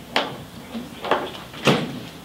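Three short, sharp clacks of small hard parts being handled on a table during assembly of a breadboard circuit. The last clack is the loudest.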